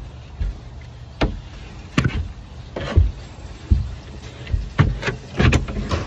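The cut bottom panel of a sleeping platform being worked into a Suburban's cargo area, giving a string of irregular knocks and thumps as it bumps against the interior.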